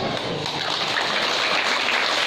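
Applause: many people clapping, starting faintly just after the speech ends and building to steady clapping about half a second in.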